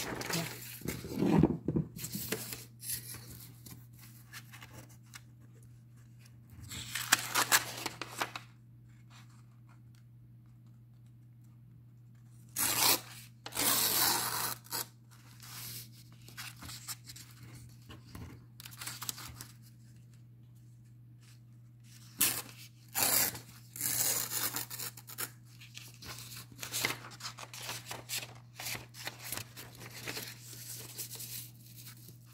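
A printed sheet of paper being ripped along a ruler edge, in several short bursts of tearing with pauses between.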